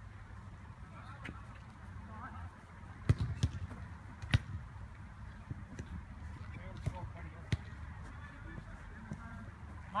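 A futsal ball being kicked during play: a few separate sharp thuds, the loudest about three seconds in and again a second later, then lighter ones around seven seconds.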